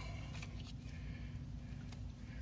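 Faint water sloshing and dripping as a hand and a plastic specimen container move through a tub of water, over a low steady hum.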